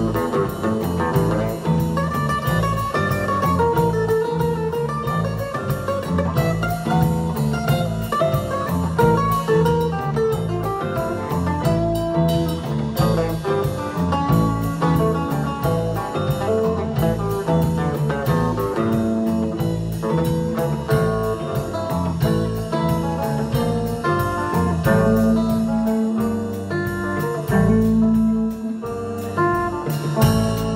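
Small rock band playing an instrumental passage live: a guitar melody of single notes over bass guitar, strummed acoustic guitar and drum kit, at a steady loudness.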